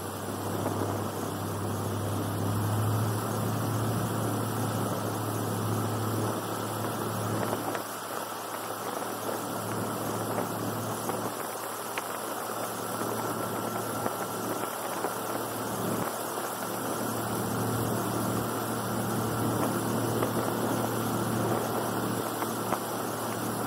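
Airboat engine and its big air propeller running steadily with a low drone and a rush of air. The drone eases off briefly about a third of the way through, then steadies again.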